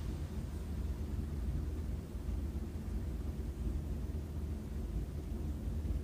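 Steady low background hum of room tone, with no distinct clicks or other events.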